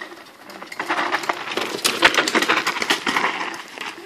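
Downhill mountain bike coming down a rough woodland trail with a rapid clatter of chain, frame and tyres over the bumps. It gets louder from about a second in.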